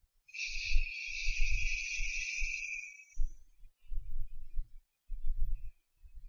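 A steady hiss of blowing air that lasts about three seconds and then fades out. Low, irregular bumps and knocks come and go throughout.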